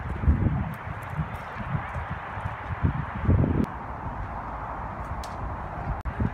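Footsteps on gravel, irregular steps about two a second, over a steady background hiss.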